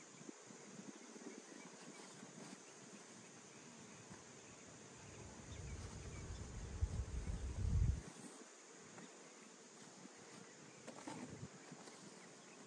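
Honey bees buzzing faintly around the hives, with a low rumble that swells between about five and eight seconds in.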